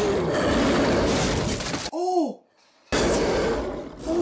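Film soundtrack of a chaotic attack scene: loud, dense crashing and splintering noise. About halfway through comes a short cry that rises then falls, then a brief gap before the crashing resumes.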